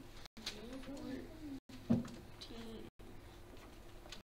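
Faint, indistinct voices murmuring in a small room, with one sharp knock about two seconds in. The sound cuts out for an instant three times.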